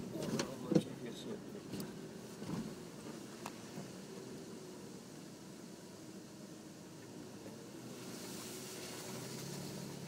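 Four-wheel drive heard from inside its cabin on a rough dirt track: a steady engine and road drone, with sharp knocks and rattles over bumps in the first few seconds, the loudest about a second in. A hiss rises near the end.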